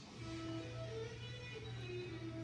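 Quiet background music: short, separate notes over a steady low tone.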